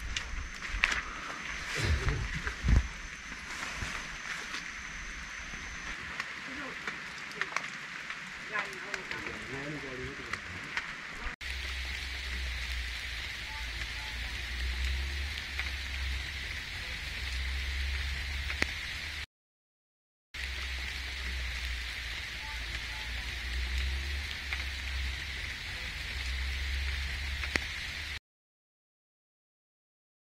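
For the first ten seconds or so, voices with a few sharp knocks. Then an abrupt change to a steady hiss of falling rain with a low rumble under it. The hiss drops out to dead silence for about a second at one point.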